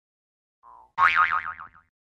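Cartoon 'boing' sound effect: a short pitched tone that wobbles quickly up and down and dies away within a second, starting about a second in after a faint brief blip.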